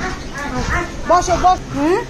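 Yellow Labrador retriever whining and yipping in short cries that bend up and down, ending in a rising whine near the end: the sound of a dog excited at someone's arrival.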